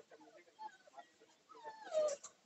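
Puppy whimpering faintly in short, thin whines, with one longer whine falling in pitch near the end.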